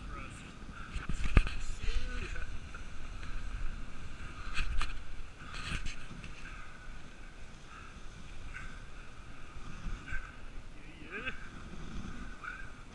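Dog sled gliding over packed snow: the runners hiss and scrape steadily, with a few sharp knocks from the sled frame jolting over bumps, over a low rumble.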